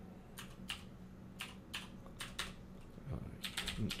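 Typing on a computer keyboard: a dozen or so separate keystrokes at an uneven pace, coming quicker near the end.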